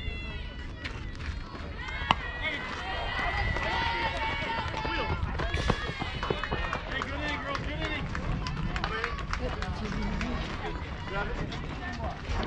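A softball bat strikes a pitched ball with one sharp crack about two seconds in. Spectators and players then shout and cheer with many overlapping voices.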